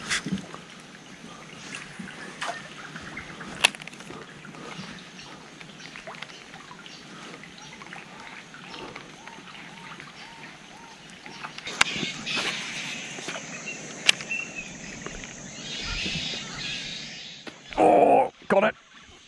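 Fight with a hooked mangrove jack on a baitcasting reel: the reel being wound against the fish, with water splashing and a few sharp clicks. The sound grows louder and busier about two-thirds of the way through as the fish comes closer.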